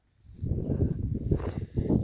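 Wind buffeting a phone's microphone: an uneven low rumble that starts a moment in.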